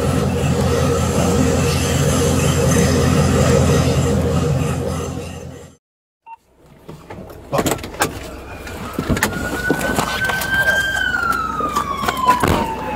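A loud, steady low mechanical hum stops abruptly about six seconds in. After a moment of silence, a police siren wails in one long slow rise and fall, with scattered sharp clicks and knocks.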